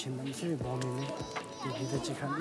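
A man talking, with music playing in the background.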